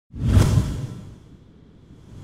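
A deep, rushing whoosh sound effect of an animated logo intro. It swells in quickly, fades away over about a second, and a second whoosh starts building near the end.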